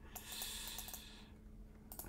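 Faint clicking of a computer keyboard, with a soft hiss during the first second or so.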